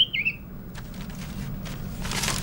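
A caged songbird gives one short warbling chirp right at the start, over a steady low background hum; a few faint light rustles follow.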